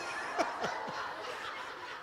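A congregation laughing, with a few short laughs falling in pitch about half a second in.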